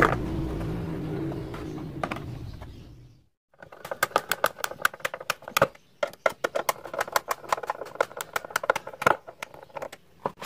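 A hand screwdriver drives the screws through a 10-inch subwoofer's mounting flange into a wooden baffle, making a fast run of sharp clicks several times a second for the last six seconds. Before that, a low steady sound fades out about three seconds in.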